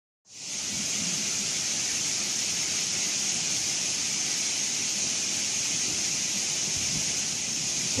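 Courtallam Main Falls in flood, heavy water plunging onto rock and a paved pool. It makes a steady, roaring rush with no break, fading in just after the start.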